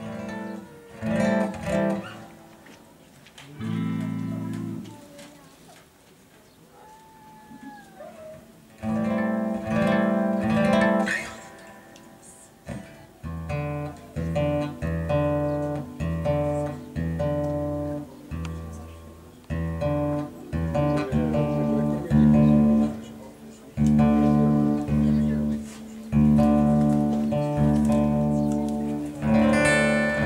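Acoustic guitar music: a few sparse plucked chords at first, then from about a third of the way in a steadier strummed rhythm that grows fuller, with a low bass line added.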